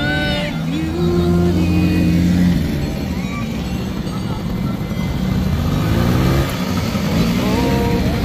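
Small quad bike engines running, with one rising in pitch as it speeds up near the end, heard over background music with singing.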